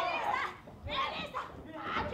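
Women's high-pitched shouts and yells in several short bursts, the vocal cries of wrestlers straining in a grapple.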